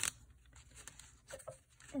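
Faint rustling and soft scrapes of paper as small paper sticker packs are handled and moved, with a couple of slightly louder rustles about a second and a half in.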